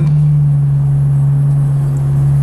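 A truck's engine drones steadily in the cab while driving at an even speed, one low hum holding the same pitch throughout.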